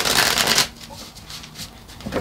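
Tarot deck being riffle-shuffled: a loud rapid flutter of cards cascading together for just over half a second as the bridge is released, then a few faint taps and slides as the deck is handled.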